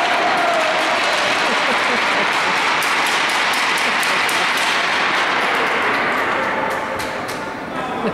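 Applause from spectators in an ice rink, dense and steady, thinning out near the end.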